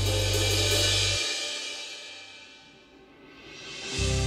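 A final cymbal crash on an electronic drum kit rings out over the song's backing track, whose bass stops about a second in; the cymbal wash fades away, and soft sustained music swells back in near the end.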